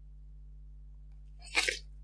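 A faint steady low hum, then about one and a half seconds in a person's short, sharp, hissy burst of breath.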